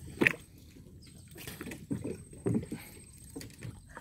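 Water sloshing and splashing in small, irregular bursts as a fish is worked free of a gill net by hand in shallow river water, with one sharper splash about a quarter second in.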